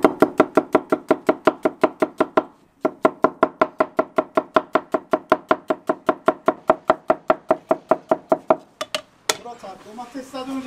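Knife slicing an onion on a wooden chopping board: a fast, even run of chops, about six a second. The chopping pauses briefly about three seconds in, then resumes and stops near the end.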